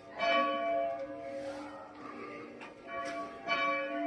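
Church bell swung by hand from a rope, striking twice, just after the start and again about three and a half seconds in, each stroke ringing on and fading. This is the final ringing-out (uitluiden) of the bell.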